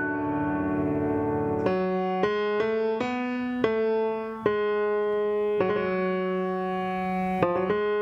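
Steinway concert grand piano played solo: a pedalled, ringing passage, then from about two seconds in a succession of chords struck one after another, some of them held for a second or more.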